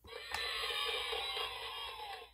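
VTech Touch & Teach Elephant toy playing a short electronic sound effect through its small speaker for about two seconds, set off by pressing the letter A button; it marks a correct answer. A click comes a moment after it starts.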